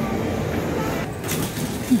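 Steady shopping-mall background noise, a dull even rumble with a faint murmur, with a short hummed "hmm" from a person right at the end.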